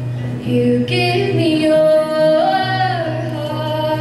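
A young girl singing a country song solo, accompanying herself on a strummed acoustic guitar. Her voice holds long notes that bend in pitch over the guitar's steady low notes.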